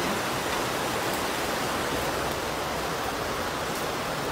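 Shallow mountain stream rushing over rocks: a steady, even hiss with a crackling, static-like quality.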